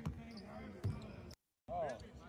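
A basketball bouncing on a hardwood court in a large, empty arena, faint on the recording, with one clear thud of a bounce a little under a second in. A voice is heard briefly near the end.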